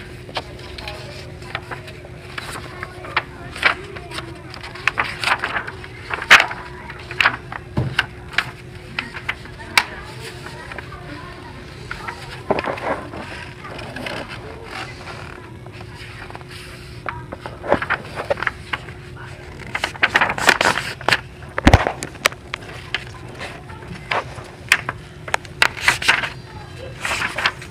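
A large sheet of paper being handled and folded: irregular sharp crinkles and rustles, busiest about five to seven seconds in and again about twenty seconds in, over a faint steady hum.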